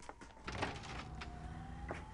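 A siren wailing slowly, its single pitch sinking and then rising again, over the low rumble of a vehicle engine that comes in about half a second in. Scattered sharp clicks can also be heard.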